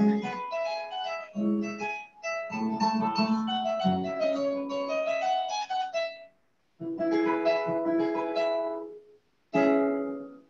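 Kora, the West African harp, played solo: quick runs of plucked, ringing notes in phrases, broken by two short pauses in the second half.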